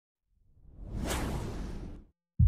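Whoosh sound effect: a rushing swell that builds from silence, peaks about a second in, and fades away near the end.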